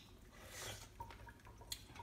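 Faint, wet chewing of a fresh, ripe strawberry, with a few small clicks.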